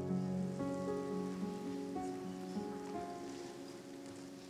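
Yamaha MO8 synthesizer keyboard playing soft, sustained chords that gradually fade.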